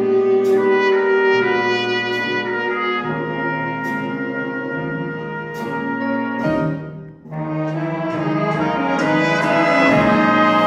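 School jazz big band playing, with saxophones, trombones and trumpets holding full brass chords. There is a short break about seven seconds in, after which the band comes back in louder.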